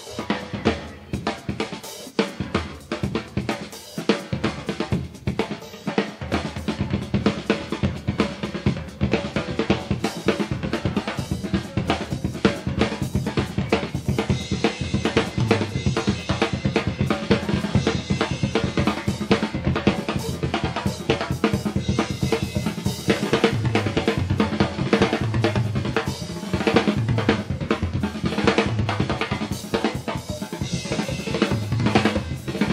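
Drum kit solo played live in concert: fast, continuous strikes on snare, bass drum and cymbals, getting fuller and heavier about halfway through.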